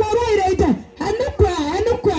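One person's voice, loud and amplified, speaking in wavering, sing-song phrases of about half a second, with heavy low thumps under several of the syllables.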